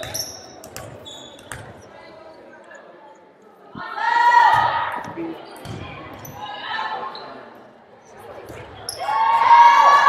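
A volleyball thudding off hands and the hard gym floor, with loud shouts from voices about four seconds in and again near the end, ringing in a large hall.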